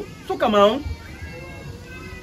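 A man's drawn-out wordless vocal interjection, like a questioning "ehh?", about half a second in, its pitch dipping and then rising again; after it only faint steady background tones remain.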